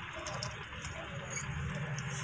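Faint, irregular light metallic clicks of a socket wrench working the bolts of an Eicher tractor's diesel fuel filter housing, over a steady background hiss.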